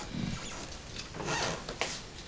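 Clothes hangers scraping along a closet rail and fabric rustling as a skirt on its hanger is pulled out, with a sharp click near the end.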